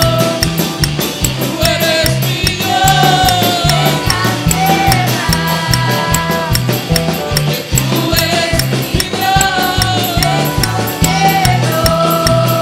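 Live band playing an upbeat, Latin-flavoured worship song: electric bass and drum kit keep a steady driving beat with regular cymbal ticks, while keyboard and electric guitar carry held melody notes.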